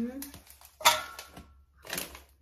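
A piece of milk chocolate clinking into a metal baking pan about a second in, a sharp click with a brief ring. A second, fainter click comes near the end.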